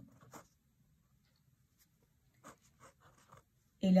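A uni-ball Eye rollerball pen writing on paper: a few faint, short scratching strokes.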